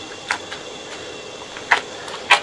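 Two short clicks of a utensil against a small stainless steel saucepan while elderberries are crushed in it.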